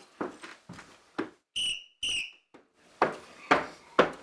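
Drum major's whistle blown in two short blasts, then footsteps marching on a wooden floor at a steady pace of about two steps a second.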